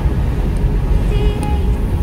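Steady low road and engine rumble inside a car cruising at highway speed, with faint music in the background.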